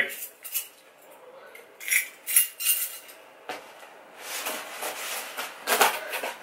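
A bunch of keys jingling in a few short metallic clinks, with a cardboard box being shifted and rustled.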